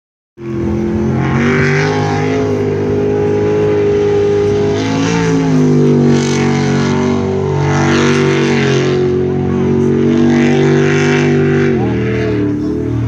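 Jet sprint boat engine running at high revs as the boat races the course, its pitch dipping briefly about five seconds in and again near the end as it eases off.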